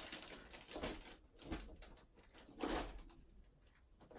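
Faint rustling and light knocks in several short bursts, the loudest near three seconds in: a person rummaging for a sheet of paper.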